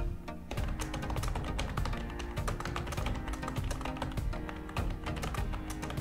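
Computer keyboard typing, a quick irregular run of key clicks, over steady background music.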